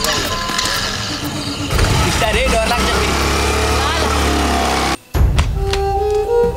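A motor scooter's engine running, with a voice over it and background music. The engine sound stops abruptly about five seconds in, leaving music.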